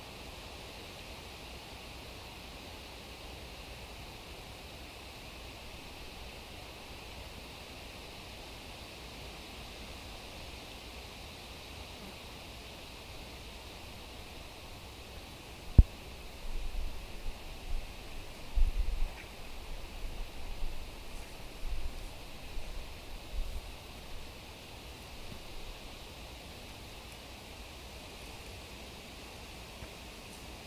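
Steady outdoor hiss, with a single sharp click about halfway through. Then several seconds of irregular low rumbling gusts of breeze buffet the camera's external microphone.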